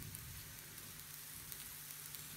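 Faint, steady sizzle of mushrooms frying in olive oil in a stainless steel pan, with a few tiny crackles.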